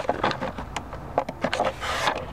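A few scattered light clicks and knocks inside a car cabin, with no engine running.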